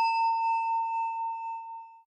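A Buddhist altar bell (orin) ringing out after a single strike: one clear, gently wavering tone that fades away and dies out near the end.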